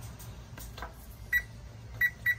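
Electric oven's touchpad control beeping as its buttons are pressed to set the bake temperature: one short, high beep about a second and a half in, and another at the very end.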